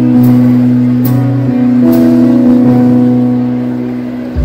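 Live rock band holding a long sustained chord through the PA, a few notes shifting above it partway through, with a faint high tick about once a second; the chord eases off toward the end, before the drums come in.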